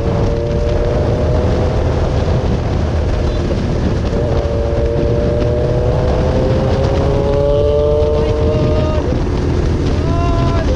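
Rusi Sigma 250 motorcycle engine running on the road, its pitch climbing slowly as it accelerates through the second half and dropping off near the end. Heavy wind buffets the microphone throughout.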